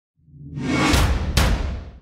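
Logo-sting sound effect: a whoosh that swells in, with two sharp hits about half a second apart over a deep rumble, then fades out near the end.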